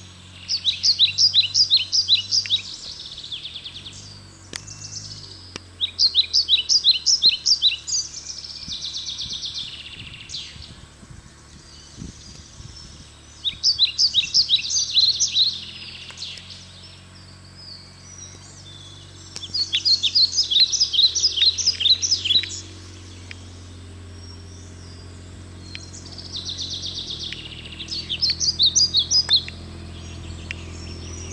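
A songbird sings loud phrases of rapid, high chirped notes, five phrases a few seconds apart. Under the song runs the low steady hum of a Kubota RTV utility vehicle's engine, which gets louder in the second half as the vehicle comes closer.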